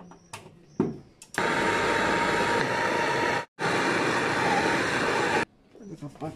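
Compressed gas blown from a hose through a refrigerator's copper tubing, rushing out as a loud, steady hiss. It comes in two blasts with a short break in the middle, the first starting about a second and a half in, after a few light handling clicks.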